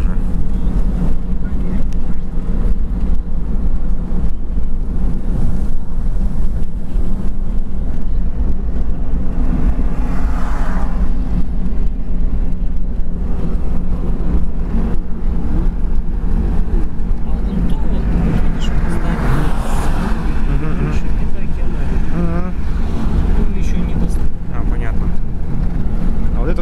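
Steady low road and engine rumble heard inside a moving car's cabin, unchanging throughout.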